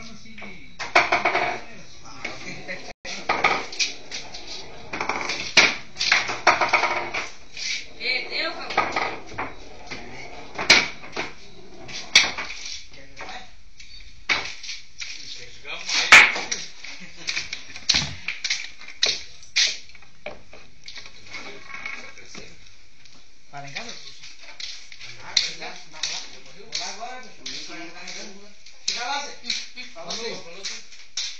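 Hard objects knocking and clattering many times at irregular intervals, with indistinct voices at times.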